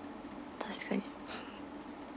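A young woman's voice whispering or muttering a few soft, breathy words to herself.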